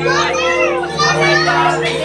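Excited children's voices calling out, with people talking, over background music with long held notes.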